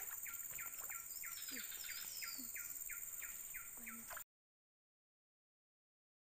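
Forest birds: one calls in a steady series of short repeated notes, about three a second, while another gives a few short whistled glides near the middle. A steady high-pitched insect drone runs underneath. The sound cuts off abruptly about four seconds in and leaves dead silence.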